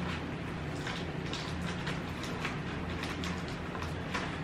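Faint scratching, tapping and rustling of a pen being poked into the taped seam of a cardboard box, over a steady low room hum.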